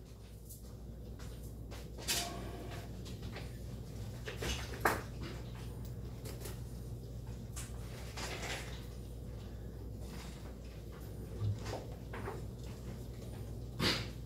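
A steady low hum of room tone, broken by a few soft, short knocks about two, five, eleven and fourteen seconds in, as of things being handled on a wooden desk.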